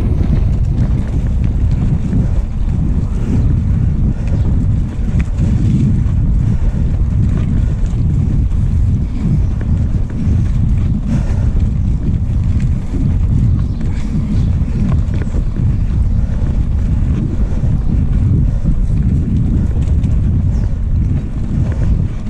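Wind buffeting the microphone of a handlebar-mounted action camera on a moving mountain bike, a steady low rumble mixed with the bike jolting over cobblestones.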